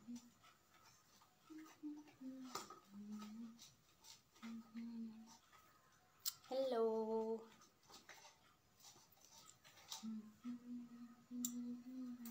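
Faint, indistinct voice murmuring in short low phrases, with one louder drawn-out vocal sound lasting about a second past the middle, and a few small clicks.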